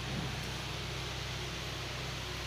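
Steady low hum with an even hiss over it, with a soft brief bump just after the start.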